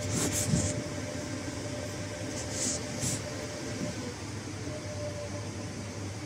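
Cooling fans of a powered-up HP ProCurve zl chassis switch running: a steady whir with a faint steady tone. A few brief soft hisses come in the first half.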